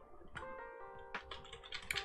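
A few scattered computer keyboard clicks over soft background music with held notes.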